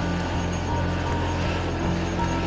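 Steady low rumble inside a moving car.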